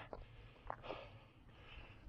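Near silence: a faint low rumble, with a soft breath about a second in.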